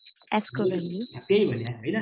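A man speaking, over a steady high-pitched tone that stops about one and a half seconds in.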